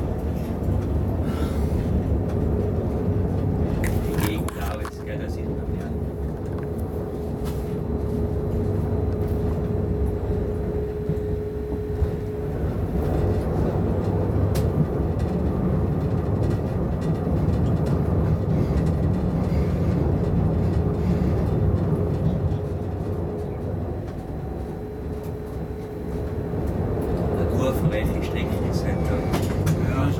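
Inside the cab of an ÖBB class 1016 electric locomotive under way: a steady rumble of the wheels on the rails, with a steady hum from the locomotive over long stretches and a few sharp clicks.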